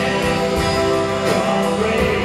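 A live rock band playing a song, with electric and acoustic guitars, drums and keyboard, steady and loud.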